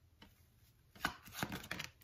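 Tarot cards being handled: a cluster of sharp taps and flicks in the second half as cards are drawn off the deck and set down on the table.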